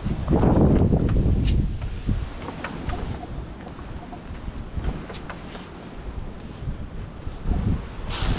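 Wind buffeting the microphone, a low rumble that is loudest in the first two seconds and then settles lower, with a few faint short beeps from a metal detector on a target around the middle.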